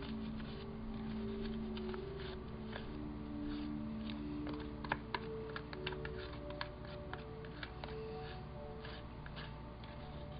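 Spatula clicking and scraping in a small plastic tub while stirring modeling paste mixed with beads, in light irregular clicks with two sharper ones about halfway through. Soft background music with held notes plays underneath.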